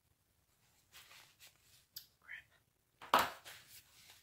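A woman whispering under her breath, with a sharp click about two seconds in and a louder breathy burst about three seconds in.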